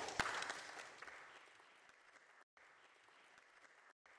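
Audience applause starting up, heard only briefly before it fades away within about a second, leaving near silence.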